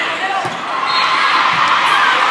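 Volleyball rally in a large, echoing hall: a couple of dull thumps of the ball being played, about a second apart, under players' calls and spectators' voices.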